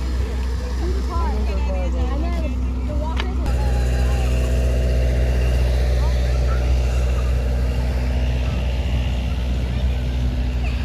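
Outdoor ambience dominated by a steady low rumble, with people nearby talking during the first few seconds. About three and a half seconds in the sound changes abruptly, and a steady mechanical hum, like an idling motor, runs under the rumble from then on.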